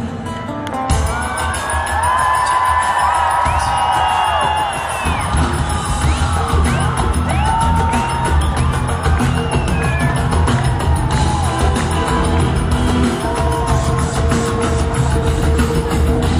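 Loud live pop concert music from a PA, recorded from within the audience: after a brief drop at the start, a bass-heavy beat kicks back in about a second in. The crowd screams and cheers over it.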